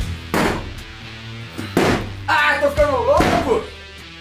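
Axe blows striking wooden wall panelling: three sharp impacts about a second and a half apart, over background music.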